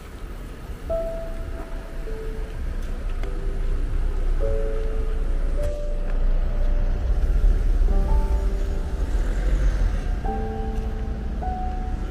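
Slow piano music playing single held notes, over the low rumble of a passing car that swells in the middle and eases toward the end.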